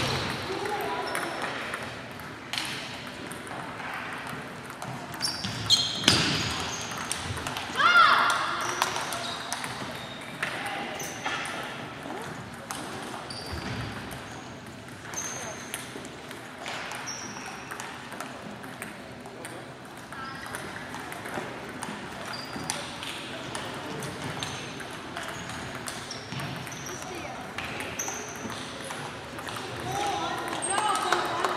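Table tennis balls clicking off bats and tables, irregular rallies from several tables at once, over indistinct voices in the hall.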